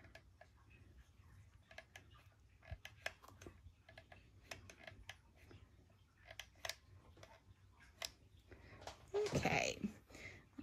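Faint, irregular light clicks and taps from working a hot glue gun and handling a paper box and fabric rosette on a craft mat.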